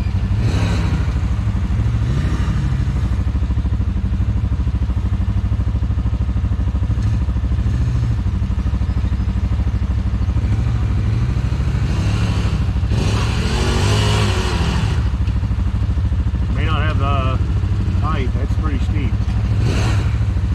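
Side-by-side UTV engine idling steadily close by, while another side-by-side drives through the shallow creek, its engine revving up and down about 13 to 15 seconds in.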